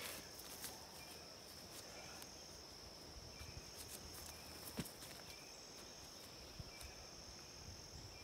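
Faint, steady high-pitched drone of insects such as crickets, with a few faint clicks, one sharper about five seconds in.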